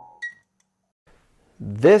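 The last note of electronic intro music fades out, then a single short high beep sounds about a quarter second in; a man starts speaking near the end.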